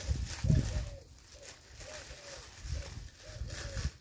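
Dried thyme bunches and a plastic bag being rustled and handled, with a few dull knocks. Fainter, a farm animal calls over and over in short rising-and-falling cries, several a second.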